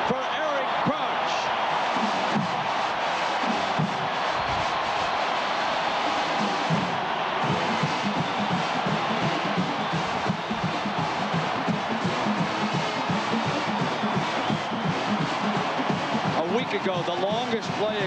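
Large stadium crowd cheering steadily for a home touchdown, with band music playing under the noise.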